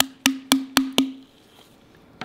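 Wood-block-like percussion: five evenly spaced hits, about four a second, each a short hollow note, stopping about a second in.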